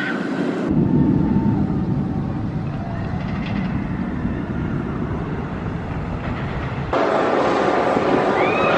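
Mako, a Bolliger & Mabillard steel hyper coaster, heard from off the ride: a train rolling along the track makes a steady low rumble. The sound changes abruptly just under a second in and again about a second before the end.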